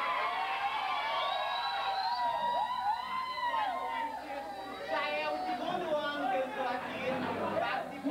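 Several people talking at once, overlapping chatter with no single clear voice.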